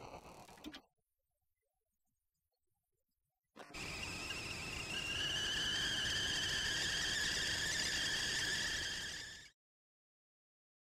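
Kettle whistling at the boil: a shrill steady whistle of several tones over a hiss, creeping slightly up in pitch. It starts about three and a half seconds in, after a few seconds of silence, and cuts off near the end.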